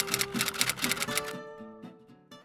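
Typewriter key clicks, about ten a second, over acoustic guitar background music; the clicks stop about a second and a half in and the music fades down near the end.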